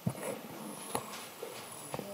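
Quiet room with a few faint, soft knocks, one near the start and one about a second in.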